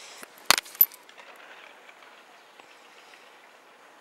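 Two sharp clicks about a third of a second apart, the second with a short high ring, over faint outdoor background noise.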